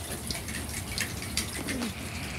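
Steady rain outdoors: an even hiss of falling water with scattered sharp ticks of drops.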